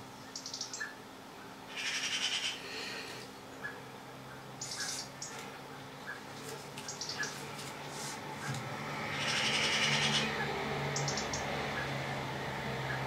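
Quiet handling of a lathe's four-jaw chuck being rocked by hand against a dial indicator: a few short scraping rasps, about 2 s and 5 s in and a longer one near the end, with faint clicks. A low steady hum comes in about halfway through.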